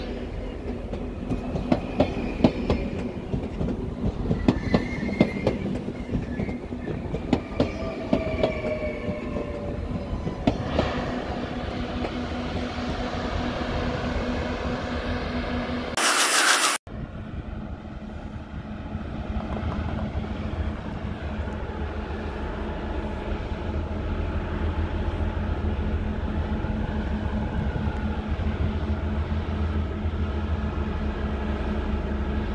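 NS VIRM double-deck electric train rolling past, its wheels clicking sharply over rail joints and points, with a few brief wheel squeals. About sixteen seconds in, a short loud burst of noise cuts off abruptly. It is followed by a steady low drone with a constant hum from a standing Arriva GTW railcar idling.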